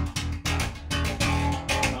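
Violin-shaped hollow-body electric bass plucked fingerstyle: a quick run of separate notes, each with a bright, clacky attack over a deep low tone, the sound of fresh bass strings.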